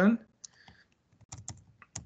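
A handful of separate keystrokes on a computer keyboard, spaced unevenly, as a short number is typed.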